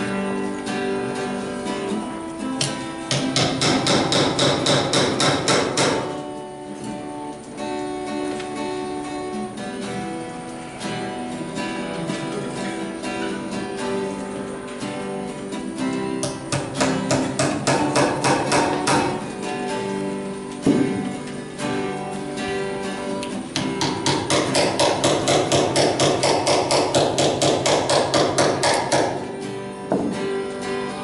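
Hammer driving nails into a wooden log in three spells of quick, even strikes, about three a second, over acoustic guitar music.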